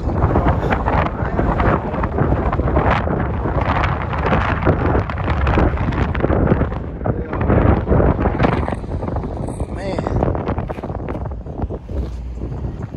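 Wind buffeting the phone's microphone in gusts, a loud, uneven rumble with no break.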